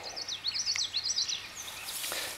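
A songbird singing a rapid string of short, high, slurred notes, about eight a second, that stops about a second and a half in.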